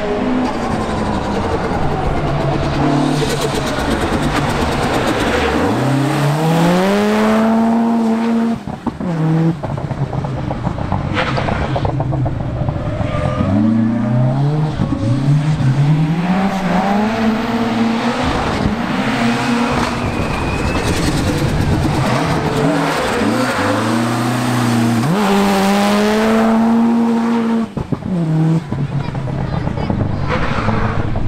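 Rally car engine driven hard through the gears, its pitch climbing with each gear and dropping at every shift, over and over, with brief lifts off the throttle about nine seconds in and near the end.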